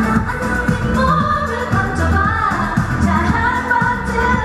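A woman singing a pop song live into a handheld microphone, over a backing track with a steady bass line.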